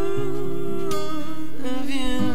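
Acoustic guitar notes under a long, held vocal note from the duet singers. Near the end the voice slides to a lower note.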